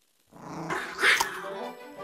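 Cartoon creature sound effect: an animal-like vocal cry from a bug-eyed, razor-toothed magical beast, starting after a brief silence and loudest about a second in, over background music.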